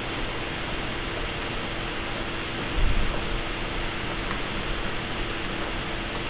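Steady room tone: an even hiss with a faint steady hum, and one soft low thump about three seconds in.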